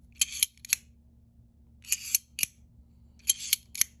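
Reate Exo-M titanium-handled gravity knife worked open and shut again and again, its double-edged blade sliding out and locking, then retracting. It makes sharp metallic clicks in three quick bursts about a second and a half apart.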